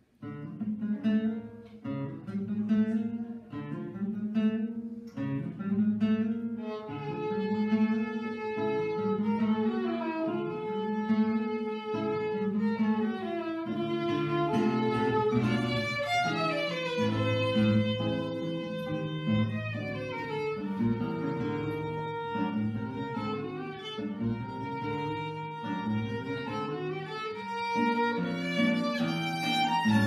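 Violin and classical guitar duo playing a tango in D minor. The music starts suddenly over the guitar's steady rhythmic chords, with the violin's melody sliding between notes more and more through the second half.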